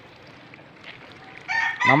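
Backyard chickens clucking faintly, then a loud rooster crow beginning about three-quarters of the way in.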